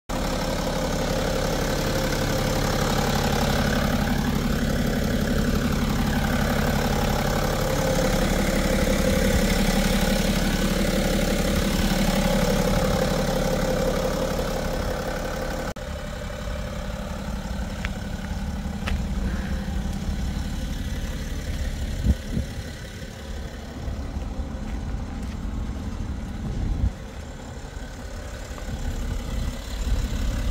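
BMW X5 30d's 3.0-litre straight-six turbodiesel idling steadily, heard up close over the open engine bay at first. About halfway through it turns quieter and more distant. A single sharp tap comes about two-thirds of the way in.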